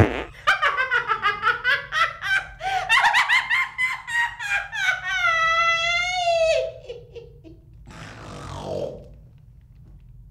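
A woman laughing hard: a quick run of loud laughs, then one long high held laugh that slides down and breaks off, then a breathy gasp near the end.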